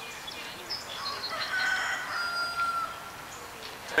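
A rooster crowing once, starting about a second in and holding for nearly two seconds, its pitch sagging slightly at the end.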